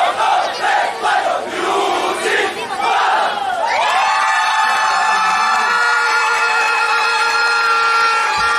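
Festival crowd shouting and cheering in loud bursts, then from about halfway through a steady held chord of several tones sounds over the crowd noise.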